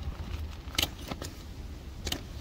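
Gear being handled in a storage bin: a nylon tool bag is gripped and lifted, giving three short clinks and rattles, the sharpest a little under a second in, over a steady low rumble.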